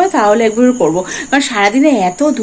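A woman talking, with a steady high-pitched tone running underneath her voice.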